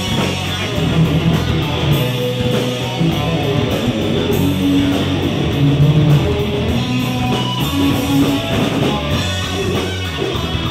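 Live rock band playing loudly, with electric guitar to the fore over bass guitar.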